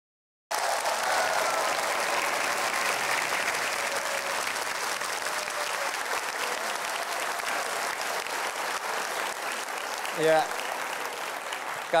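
A large studio audience applauding. The applause cuts in suddenly about half a second in and holds steady, easing slightly toward the end.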